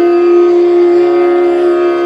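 Indian classical instrumental music: a flute holds one long, steady note.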